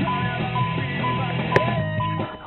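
Music streamed over Bluetooth from a phone, playing through a Pioneer DEH-P7100BT car stereo and heard in the car's cabin.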